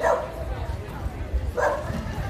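A dog barks twice, two short barks about a second and a half apart.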